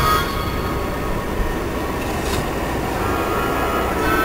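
Car driving in city traffic, heard from inside: a steady low road-and-engine rumble.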